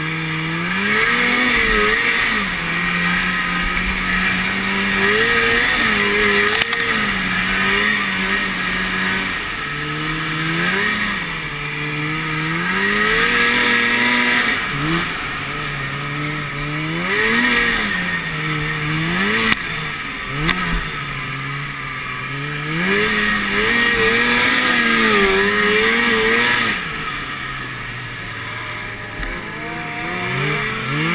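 Two-stroke snowmobile engine under way, its pitch rising and falling again and again as the throttle is opened and eased, over steady wind rush.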